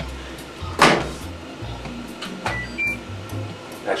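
A sharp thump about a second in, then two short electronic beeps from the washing machine's control panel, the second a little higher than the first, over background music.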